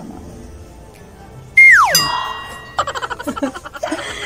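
Edited-in cartoon-style sound effect: a loud whistle tone that slides steeply down in pitch about one and a half seconds in, followed by a quick run of short jingling notes.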